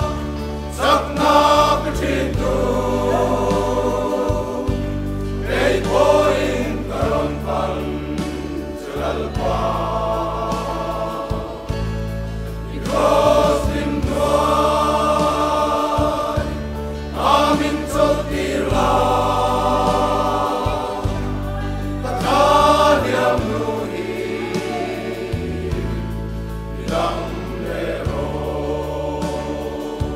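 Large men's choir singing a gospel song in phrases of a few seconds, over sustained low bass notes that change every second or two.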